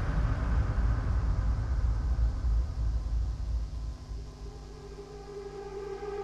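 Hardstyle DJ mix at a breakdown: a deep rumbling noise effect dies away over about four seconds, then sustained synthesizer chords come in near the end.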